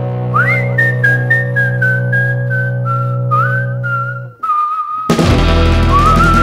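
Instrumental passage of a folk-rock song: a whistled melody slides up, then steps slowly downward over sustained chords and light ticking percussion. The music breaks off suddenly about four seconds in, and a second later the full band comes back in with drums while the whistled line carries on.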